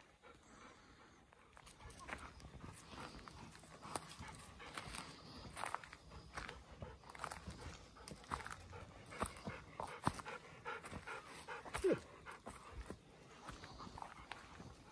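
Golden retrievers panting, with irregular crunching and rustling of footsteps on dry leaf litter and twigs along a forest trail. One short falling squeak near the end.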